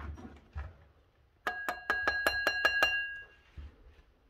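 An alarm bell ringing in a quick burst of about eight metallic strikes over a second and a half, the ring hanging on briefly after the last strike. Soft handling thumps come before it.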